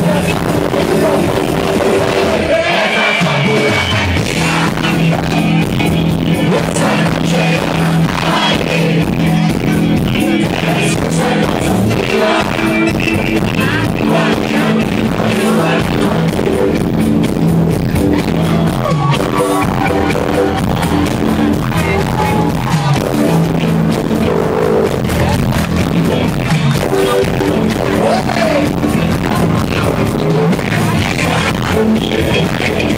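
A live band plays a song loud through the PA, with a steady beat and a singer's voice coming in at times, heard from within the audience.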